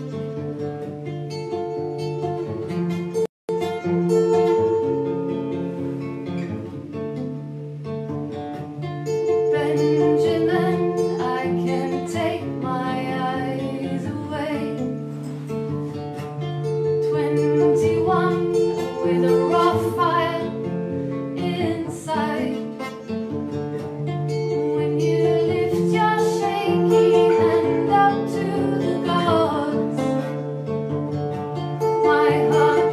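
Acoustic guitar playing a song with a woman singing over it. The sound cuts out completely for a split second about three seconds in.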